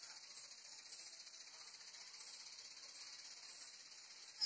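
Near silence with a steady high-pitched hiss.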